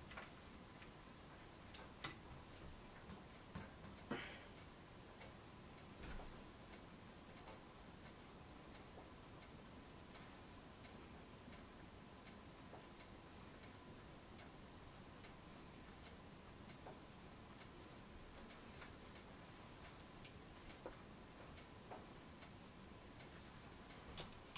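Near silence with scattered faint, irregular clicks and taps from hand work on an oil-based clay sculpture, more frequent in the first eight seconds, over a faint steady high whine.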